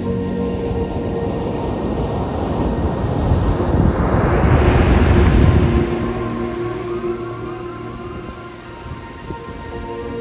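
Background music with surf over it: a wave breaks and its foam rushes up the sand, swelling to its loudest about five seconds in and then falling away as the music comes back to the fore.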